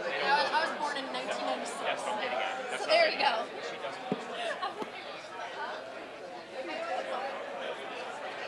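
Indistinct chatter of many people talking among themselves at once in a large room.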